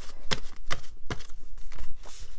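A stack of paper dollar bills being handled and shuffled together in the hands: a quick, irregular run of crisp paper rustles and flicks.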